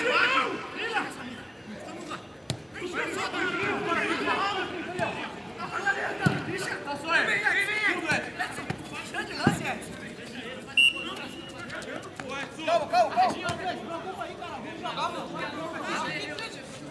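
Football players shouting and calling to one another on the pitch during a training match, with a few sharp thuds of the ball being kicked.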